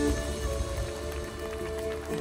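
Sicilian folk band playing live: an instrumental passage of held notes over a low bass, with no singing.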